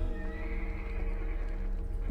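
Film soundtrack: sustained orchestral chords over a deep low rumble, with a horse whinnying.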